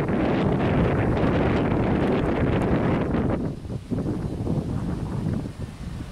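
Wind buffeting the microphone over the steady rumble of a freight train's cars rolling past a grade crossing. The noise eases a little about three and a half seconds in.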